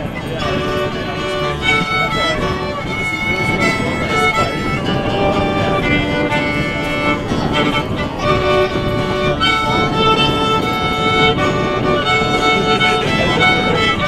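Fiddle taking an instrumental lead, bowing a slow melody of held notes, over strummed acoustic guitar and upright bass.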